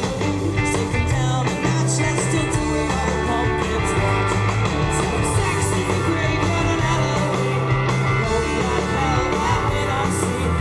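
Live rock band playing through a PA: electric guitars, bass and drums in a loud, steady groove.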